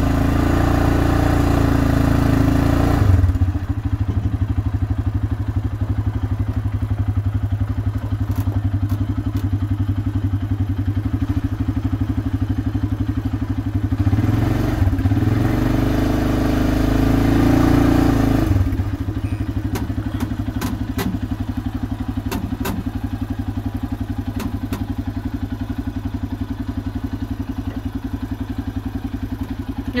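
Arctic Cat ATV engine running with a steady firing beat, given throttle twice: for about three seconds at the start and for about four seconds midway, as the quad climbs wooden plank ramps into an aluminium boat. Between the throttle bursts it drops back to a low run, with a few light knocks and clicks.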